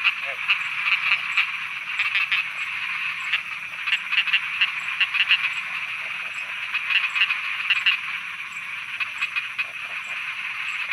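Night chorus of many frogs croaking: a dense, steady layer of calls, with clusters of rapid pulsed croaks standing out every second or two.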